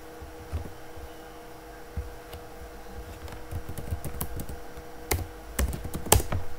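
Computer keyboard keys being typed: scattered keystrokes that get busier in the second half, with two sharper key presses near the end. A faint steady hum runs underneath.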